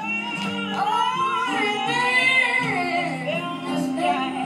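A female voice singing a long, sliding phrase over acoustic guitar accompaniment.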